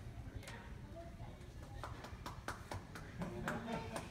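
Light, scattered applause from a small audience: many separate hand claps at an uneven pace, with a brief voice about three seconds in.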